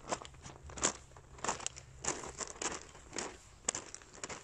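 Footsteps crunching on gravel and stony ground, a few irregular steps a second.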